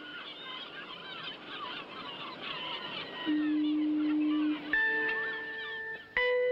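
Birds calling over a steady background hiss, with many short chirping calls, in the seaside soundtrack of a film on television. About three seconds in a held low note comes in, and near the end sustained music notes begin.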